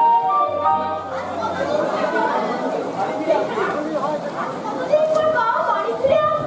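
Music with long held instrument notes for about the first second, then voices talking with a hall's echo.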